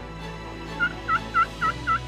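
Turkey calling: a quick series of short notes, about four a second, starting about a second in, over faint background music.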